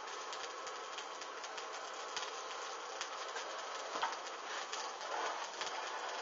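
A hanging padded bra burning, its flames crackling with many small irregular pops over a steady hiss.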